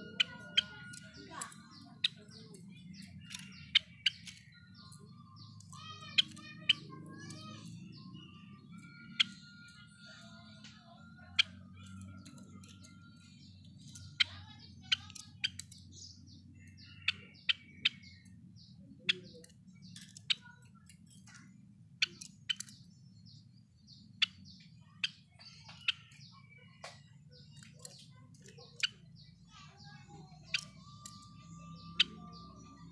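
Java sparrow (Padda oryzivora) calling in its cage: short sharp chip notes at irregular intervals, roughly one every second, mixed with brief whistled notes, over a steady low background hum.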